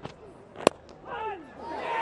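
A single sharp crack of a cricket bat hitting the ball, about two-thirds of a second in, as the batter clips a delivery into the leg side. Shouting voices follow, rising in level toward the end as the ball is caught close in.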